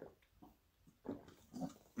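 A person swallowing gulps of a drink from a plastic bottle held to the mouth: a few faint gulps, the louder ones about a second in and again near the end.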